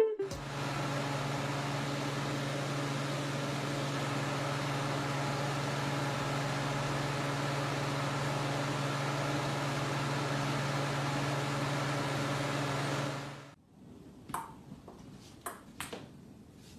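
Small floor circulator fan running: a steady whir with a low motor hum that cuts off suddenly about two seconds before the end. A few light, sharp clicks follow.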